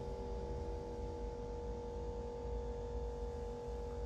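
A steady hum: a few held tones over a low rumble, unchanging in level.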